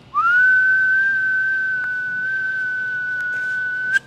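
A person whistling one long, steady note that slides up at the start and cuts off near the end.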